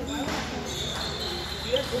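Table tennis ball clicking on tables and bats, with one sharp click near the end, over the chatter of a busy hall.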